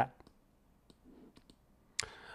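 A pause with near silence and a few faint, scattered clicks, about four over the two seconds.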